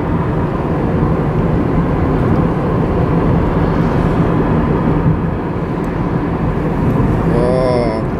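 Steady road and engine noise inside a moving car's cabin: a low rumble with tyre hiss, even in level throughout.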